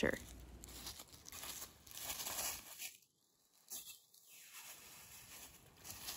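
Faint, intermittent rustling and crunching in dry fallen leaves, with crinkling like a thin plastic bag being handled, broken by a moment of near silence midway.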